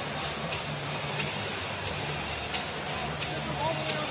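Hockey arena crowd noise, a steady murmur under the broadcast, with a few faint clicks from sticks and puck on the ice.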